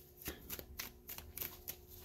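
A deck of tarot cards being shuffled by hand: a quiet, quick run of soft card flicks, about five a second.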